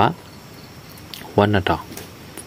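A man's voice: the end of a phrase right at the start and a short spoken phrase near the end, with a faint steady background noise in between.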